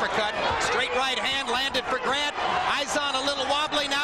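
A man's voice talking throughout, over the arena background, with a few short sharp knocks.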